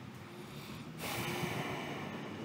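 A long, audible breath close to the microphone, a steady hiss that starts suddenly about halfway through.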